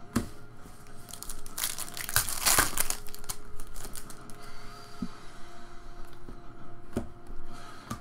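Foil trading-card pack wrapper being torn open and crinkled, loudest from about one and a half to three seconds in, then cards handled with a few light clicks.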